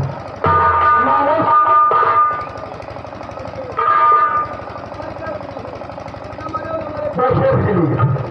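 A voice on stage through a PA microphone, with music accompaniment. It comes in loud passages of long held notes, about half a second in and again around four seconds, and picks up again near the end.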